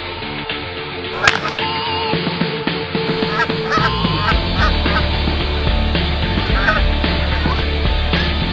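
Canada geese honking: a run of short calls from about three seconds in, with music underneath.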